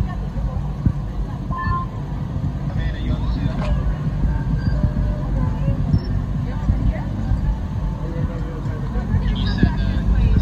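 A steady low engine hum of an idling vehicle, with indistinct voices of people nearby over it.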